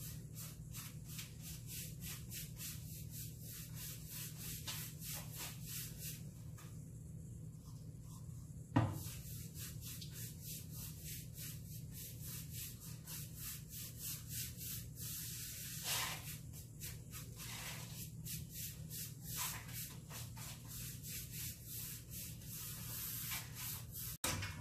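A paintbrush swishing back and forth on a wooden headboard, laying on watered-down black chalk paint in quick, even strokes at about three a second, over a steady low hum. The strokes pause briefly, and a single knock sounds about nine seconds in.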